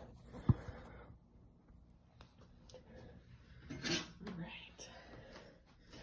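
Faint kitchen handling noises from a knife and tinfoil: a sharp click about half a second in, then a short burst of rustling and clinking around four seconds in, with a few small ticks after it.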